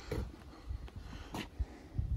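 Faint footsteps and phone handling noise, with a few soft knocks and a click, the clearest a little over halfway through.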